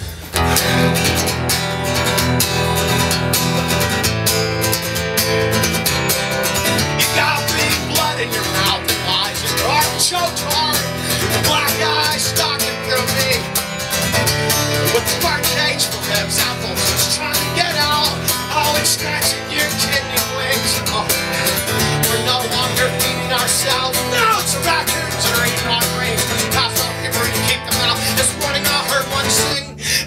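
Electric bass and a strummed guitar playing live, an instrumental passage with no singing.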